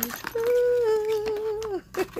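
A woman laughs briefly, then holds one long hummed note that sags slightly in pitch as it ends, over faint clicks of a cardboard box being opened.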